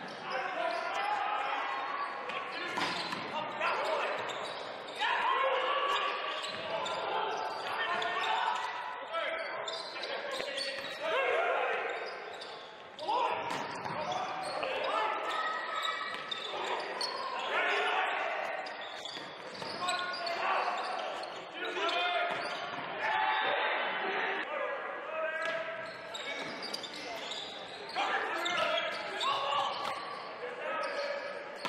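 Indoor men's volleyball rally sounds echoing in a large gym: the ball being struck on serves, sets and spikes and landing on the hardwood court, amid players' shouts and spectators' voices.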